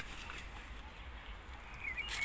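Faint outdoor ambience with a steady low rumble, and a few brief, faint high chirps near the start and again near the end.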